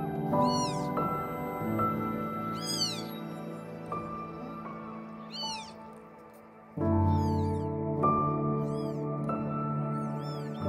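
Newborn kittens mewing: short, thin, high squeaks that rise and fall, one every two or three seconds, over background music of slow held chords that grows fuller about seven seconds in.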